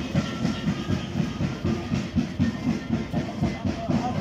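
Band music for a carnival street dance: a steady, fast drum beat of about four beats a second, with faint held high notes above it.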